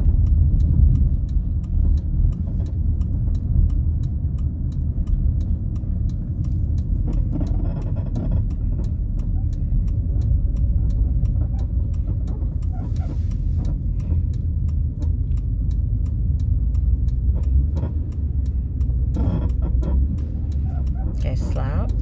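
Steady engine and road rumble heard inside the cabin of a moving Chrysler car driving slowly.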